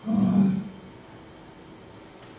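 A woman's voice through a hand-held microphone: one short, held hesitation sound lasting about half a second, right at the start.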